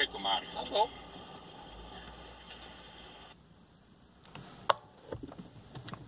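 The tail of a recorded phone-audio argument: a brief voice in the first second, then the recording's steady background hiss, which cuts off abruptly about halfway through. A single sharp click follows a little later.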